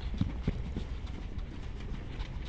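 Footsteps of several players running and changing direction on artificial turf: a few soft, irregular thuds in the first second, lighter steps after that.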